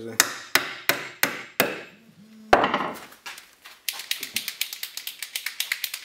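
Claw hammer driving a nail into a wooden beehive frame's top bar, five quick sharp strikes about three a second. Then one louder knock, followed by a rapid run of light ticks.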